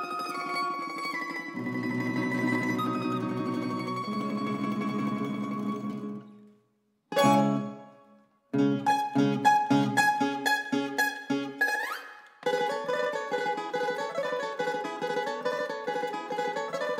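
Tambura quartet (bisernica, A-brač, E-brač and tambura čelo) playing a folk-song arrangement. Held chords die away into a brief silence, and a single struck chord rings out. After another short pause comes a run of short separate chords, then a quick upward slide, and fuller playing resumes.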